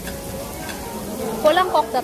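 Pork slices sizzling on a tabletop grill plate, a steady hiss. Near the end a short burst of voice is the loudest sound.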